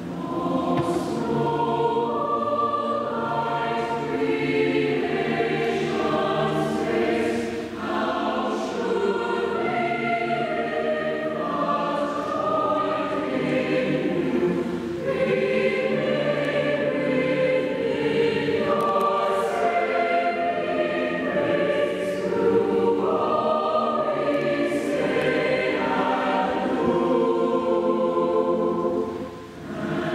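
Large mixed choir of men and women singing, holding chords that shift every second or so, with short breaks between phrases about eight and fifteen seconds in. The voices ring in a reverberant church.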